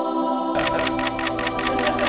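Nikon DSLR shutter firing in a rapid burst of about nine frames, roughly five a second, starting about half a second in, over steady background music.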